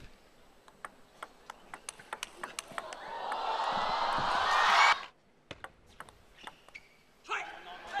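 A table tennis ball clicking on the table and bats, with sharp irregular knocks. A crowd's cheering swells up for about two seconds and then cuts off suddenly; this is the loudest part. More single ball knocks follow.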